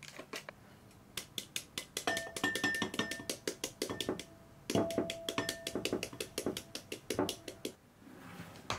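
Metal flour sieve shaken and tapped against the rim of a glass bowl while sifting flour and cocoa: a fast run of light taps with a faint metallic ring. The taps pause briefly a little past halfway, then start again.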